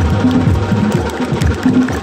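Live drumming on hand drums and a drum kit: a fast, steady rhythm of low drum strokes with sharp higher hits over them.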